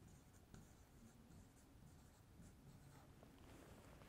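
Near silence, with faint marker strokes writing on a whiteboard.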